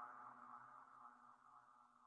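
Near silence: the last faint tail of background music, a held tone slowly fading away and cutting off at the very end.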